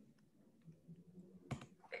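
Faint computer keyboard clicks as a command is typed, with one short spoken word near the end.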